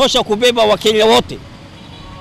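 A man speaking over low street traffic noise; his voice stops a little over a second in, leaving only the quiet hum of the traffic.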